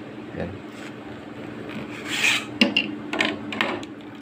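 Coiled steel spring bender and PVC conduit pipes being handled on a wooden tabletop: a rasping scrape and rub of the steel coils against pipe and wood, with a few light knocks.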